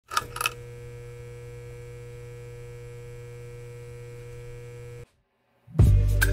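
Two quick bursts in the first half second, then a steady electrical hum that cuts off suddenly about five seconds in; music starts just before the end.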